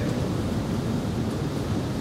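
Steady hiss of background noise with a low rumble: the room tone of a hall, heard through an open microphone.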